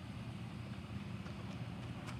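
Faint steady low hum with a light hiss: background noise, with no distinct event.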